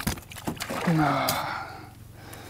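A man's short, low grunt followed by a long, hissing breath-out that fades away, with a sharp knock right at the start.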